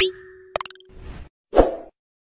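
Animated-graphic sound effects. A whoosh peaks right at the start, a quick run of clicks follows about half a second in, and a short loud pop comes near the end.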